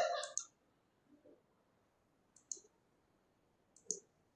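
Two faint, short clicks about a second and a half apart, the second near the end.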